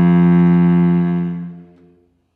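Cello playing one long bowed note, held steady and then fading away over the last half second.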